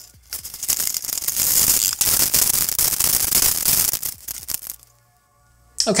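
Crackling and rustling of cardboard and plastic packaging as a LEGO set box is opened and its plastic parts bags are tipped out onto a desk. It goes on for about four seconds and then stops abruptly.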